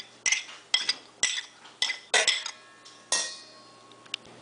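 A metal spoon clinking against a ceramic plate and a stainless steel mixing bowl while scallions are scraped off the plate: about six sharp clinks, the last two leaving the steel bowl ringing briefly.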